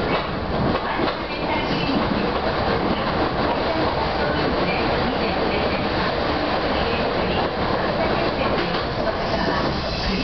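Meitetsu Seto Line electric train running at speed, heard from inside at the front: a steady running noise of wheels on rail.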